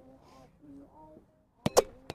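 Roundnet (Spikeball) ball being served: two sharp smacks in quick succession near the end, the hand striking the ball and the ball hitting the taut net.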